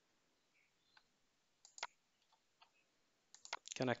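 A few faint computer mouse clicks, the sharpest a quick pair a little under two seconds in. A man's voice starts near the end.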